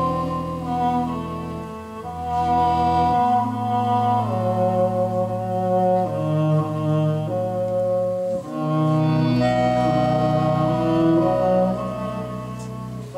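Live band playing a slow instrumental passage: held notes over a low bass line from an upright bass, changing every second or two.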